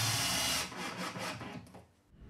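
Cordless drill driving a screw into wood, its motor running steadily and stopping about half a second in, followed by a few fainter knocks.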